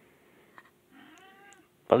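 A faint, short high-pitched cry, falling slightly in pitch, lasting under a second near the middle, after a faint click.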